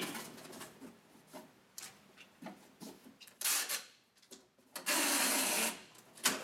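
Cardboard box flaps being folded down with light rubs and taps, then packing tape pulled off a handheld tape gun across the box seam: a short rasp about three and a half seconds in, and a longer, louder rip lasting about a second near the end.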